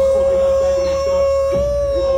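A voice holding one long, high note at nearly level pitch, over music with a steady deep bass.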